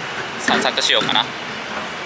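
Steady city street traffic noise, with a short burst of a person's voice about half a second in.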